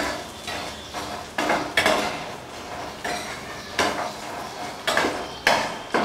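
Steel spoon knocking and scraping against a non-stick frying pan as paneer cubes are stirred and turned, in a string of sharp, irregular clinks.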